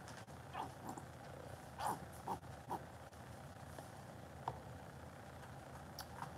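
Faint handling noises from a plastic paint bottle squeezed and moved by a gloved hand: a few soft, scattered clicks and crackles over a low steady hum.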